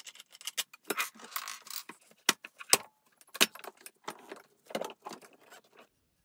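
3D-printed plastic frame parts and aluminium tubes being handled and fitted together: a busy run of clicks, clinks and rattles, with a few sharper knocks in the middle.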